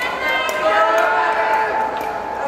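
Voices shouting and calling out, several overlapping.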